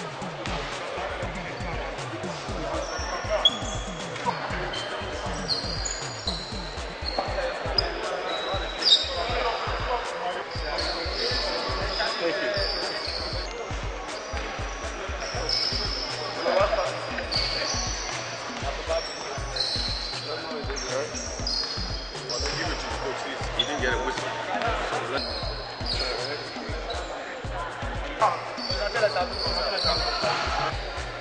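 Basketball gym ambience: basketballs bouncing on the hardwood court and sneakers squeaking, over the chatter of many people.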